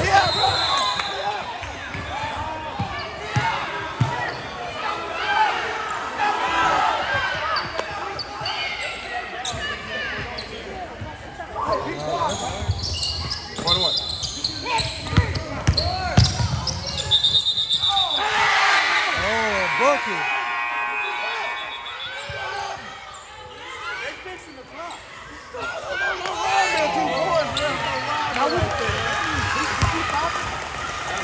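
Basketball bouncing on a hardwood gym court, with a few short high squeaks and players and spectators shouting, echoing in a large hall.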